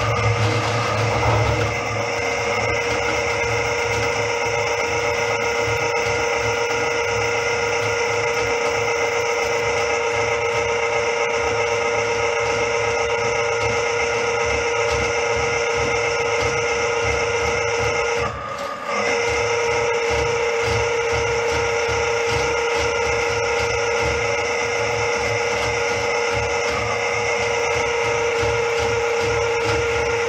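Electric drain-snake machine running steadily, its spinning cable being fed down a toilet drain line to clear a blockage. The machine hums at a steady pitch, stops for about half a second a little past the middle, then runs on.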